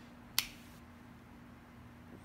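A single sharp click from a torch lighter being readied, about half a second in, over faint room tone with a steady low hum.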